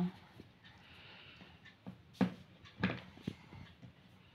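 Quiet handling of small plastic craft jars and their screw lids, with a few light clicks and taps in the second half.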